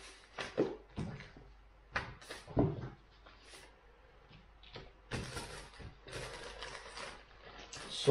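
Handling of paper comic magazines and clear plastic bags on a desk: a run of short rustles and soft knocks, then a longer steady rustle of paper and plastic sliding about halfway through.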